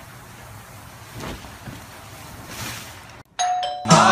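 Low background hiss with two soft whooshes, then, about three seconds in, a doorbell chime rings out in clear, sustained tones.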